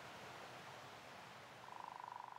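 Near silence: a faint steady hiss, with a faint, rapidly pulsing single tone coming in near the end.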